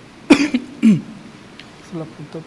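A person coughing or clearing the throat twice in quick succession: a sharp first cough about a third of a second in, then a second, lower, falling one just before the halfway point.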